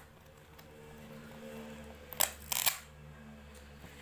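A small cardboard box being handled and pulled open by hand: two short, sharp rustles about halfway through, over a low steady hum.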